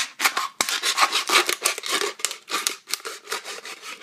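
Kitchen knife sawing through the thin plastic of an empty water bottle, a quick, uneven run of cutting strokes.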